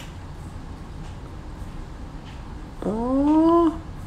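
A single drawn-out vocal call, rising in pitch and then holding, under a second long, about three seconds in, over a steady low hum.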